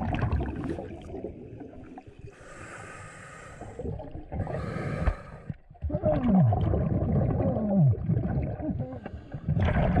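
Scuba regulator breathing heard underwater: low bubbly rumbling from exhalations, with two hissing inhalations a little after two and four seconds in. A louder burst of exhaled bubbles follows after about six seconds, carrying two tones that slide downward.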